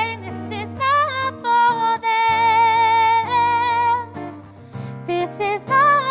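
A woman singing a slow song to guitar accompaniment, holding long notes with vibrato; the longest is held from about two seconds in to about four.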